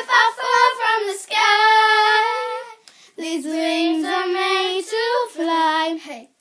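Young girls singing without backing, holding two long sung phrases, the second lower in pitch, with a brief break about three seconds in.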